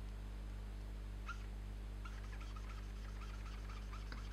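A pink felt-tip marker squeaking on paper as strokes of shading are filled in. There is one squeak about a second in, then a quick run of short squeaks, about four a second, over a steady low electrical hum.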